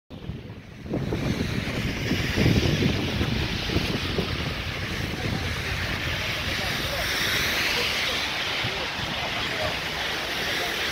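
Wind buffeting the microphone in gusts, over a steady rush of wind and city traffic in a snowstorm. It comes up about a second in.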